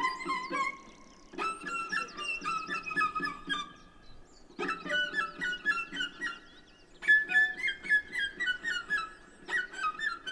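Solo cello improvisation played with the bow: quick runs of short notes in phrases broken by brief pauses every two to three seconds.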